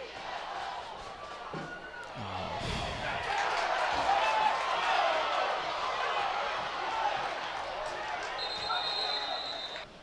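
Football stadium crowd noise with many voices, swelling a few seconds in, with a few dull thuds early on. A steady high whistle sounds for over a second near the end.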